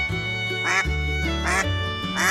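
Two duck quacks, about a second in and a second and a half in, over background music.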